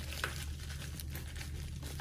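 Faint rustling and a few light clicks as a heavily taped shipping package is handled before being cut open, over a steady low hum.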